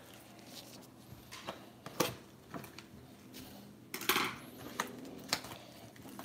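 Gloved hands handling a cardboard trading-card hobby box: scattered light taps, scrapes and rustles of cardboard, the sharpest knocks about two and four seconds in.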